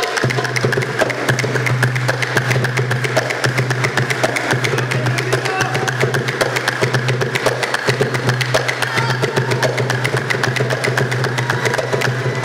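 Bushehri folk music played live: fast, even percussion strokes over a steady low drone.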